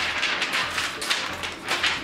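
A sheet of printer paper flapping and rustling as it is waved quickly through the air, in a rapid run of crackly swishes.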